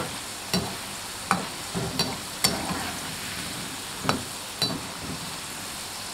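Potato fries deep-frying in hot oil, with a steady sizzle. A slotted spoon stirs them and knocks against the pan about seven times, at irregular intervals.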